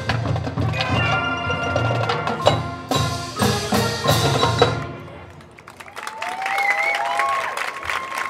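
Marching band of brass, mallet percussion and drums playing the last loud chords of a field show, with regular strikes from the pit marimbas and drums; the music cuts off about five seconds in and rings out. From about six seconds in, a crowd cheers and claps.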